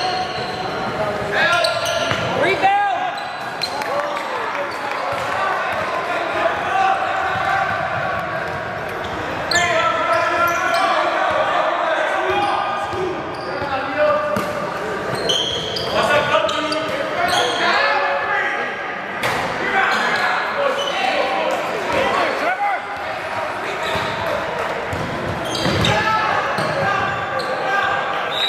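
Basketball dribbling and bouncing on a hardwood gym floor during play, with indistinct shouts and talk from players and spectators echoing around a large hall.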